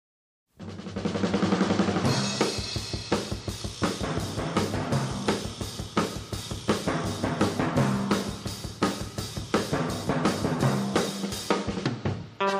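Intro music led by a drum kit playing a steady beat over a bass line, starting about half a second in.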